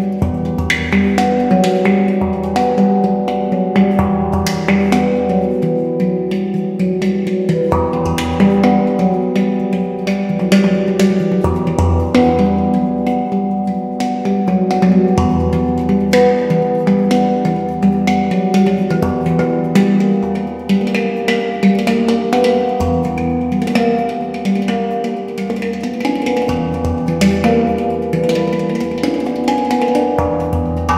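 Yishama pantam (steel handpan) played by hand: a continuous stream of fingertip strikes on its tone fields, the notes ringing on and overlapping over a deep, sustained low tone.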